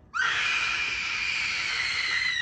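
A woman's long, high-pitched scream that slides up sharply at its onset, just after the start, and is then held at a steady pitch.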